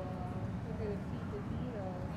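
Indistinct chatter of several people in a large public room, over a steady low background hum.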